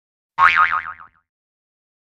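A cartoon 'boing' sound effect: a single springy tone about half a second in, its pitch wobbling quickly and sliding down, over in under a second.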